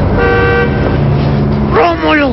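A short horn toot lasting about half a second, followed by a lower, steady horn-like tone that cuts off just before the end.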